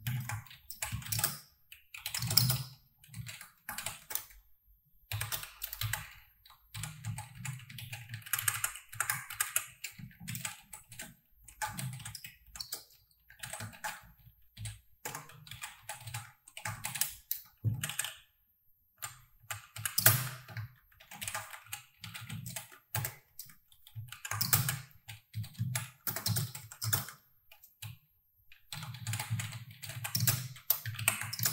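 Typing on a computer keyboard: quick runs of key clicks broken by short pauses, with one louder keystroke about two-thirds of the way through.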